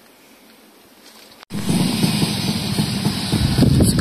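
Quiet car-cabin room tone for the first second and a half, then a sudden cut to loud, fluttering wind noise on the microphone outdoors.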